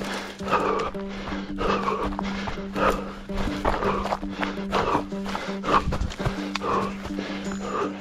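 Runner's hard, rhythmic breathing and footfalls on a stony trail, about two to three strides a second, over a steady low hum.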